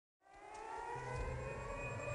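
A rising riser sound effect for a logo intro: a layered chord of tones fades in just after the start and climbs slowly in pitch, over a low hum.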